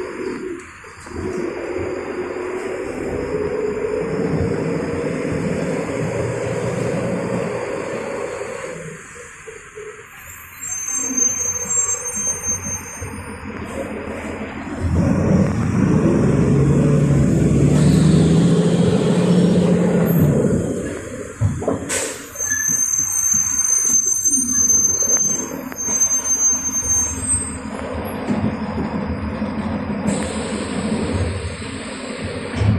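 Mercedes-Benz city bus's diesel engine heard from inside the passenger cabin, rising in pitch as it pulls away, easing off, then pulling hard again in the middle of the run. A single sharp snap comes a little past two-thirds through, with thin high squeals around it.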